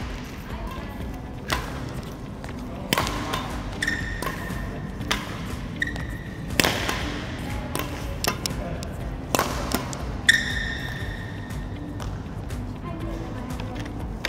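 Badminton rackets striking shuttlecocks in a multi-shuttle drill, a sharp hit every second or two, with short high squeaks of court shoes on the floor between hits.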